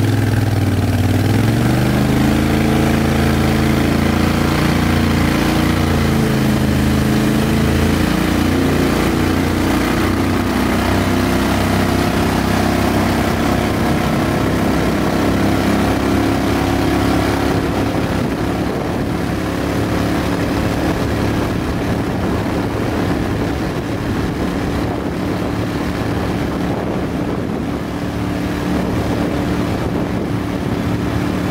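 Mud Buddy HDR 5000 50 hp surface-drive mud motor with a Stainless Works exhaust, turning a two-blade Backwaters Big Blade 10-pitch prop. It revs up from low speed, rising in pitch over the first few seconds, then runs steady at high throttle as the boat gets up to speed.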